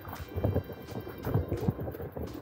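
Bicycle rolling over a wet gravel path, with irregular low rumbling thuds as the wheels and camera jolt over the bumps, and light ticks of rain.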